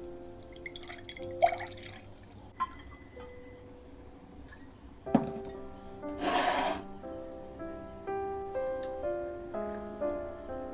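Juice being poured from a glass pitcher into a drinking glass, splashing for the first couple of seconds, then a sharp knock about five seconds in and a short burst of noise just after six seconds. Soft piano music plays throughout.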